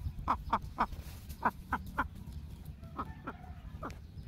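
Domestic hen clucking: short, falling clucks in three quick runs of about three each, over a low steady rumble.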